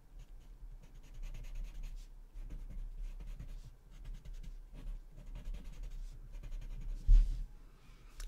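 Paper blending stump (tortillon) rubbing graphite across a small paper tile in short, faint strokes. A soft low thump about seven seconds in.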